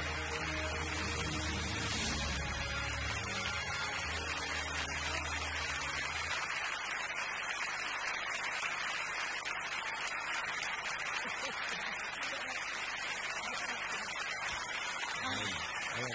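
Large theatre audience applauding steadily, with music playing underneath that stops about six seconds in.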